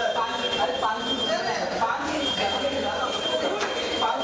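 Several people talking over one another, with a thin, steady high-pitched tone that breaks off about a second in and comes back about two seconds in.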